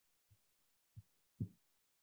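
Near silence broken by three soft, low thumps a few tenths of a second apart, the third the loudest.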